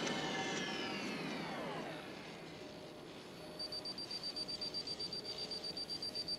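Electronic transition sound effect: several falling whistling tones fade away over the first two seconds, then a high beep starts about three and a half seconds in, pulsing rapidly at about eight beeps a second.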